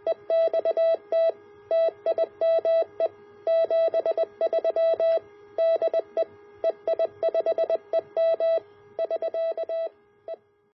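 Morse code sent as a keyed tone of one steady pitch, short dots and longer dashes in an irregular rhythm, likely a CW sign-off.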